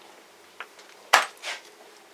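A blitz chess move with wooden pieces: one sharp knock a little after a second in, followed about half a second later by a softer click, with a faint tick before it.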